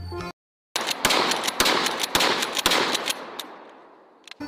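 A pump-action shotgun fired rapidly, several shots in about two seconds, the sound ringing out and fading away toward the end.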